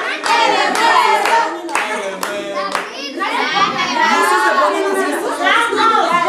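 A group clapping in a steady rhythm, about three claps a second, while voices sing along. The clapping fades out about three seconds in, and several voices shout together.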